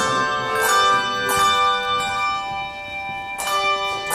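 Handbell choir ringing a hymn tune: chords of bell tones struck together, the first few coming about half a second apart, then one chord left ringing and slowly fading for about two seconds before the next strike near the end.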